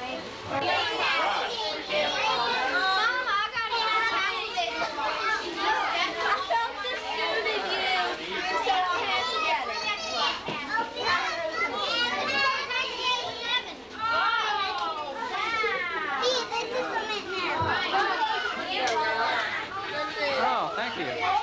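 A group of children talking and calling out over one another, high-pitched and lively, with rising and falling squeals among the voices.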